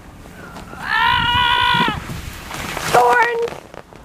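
A child's long yell held at one pitch for about a second, then a short hiss and a second, shorter call about three seconds in.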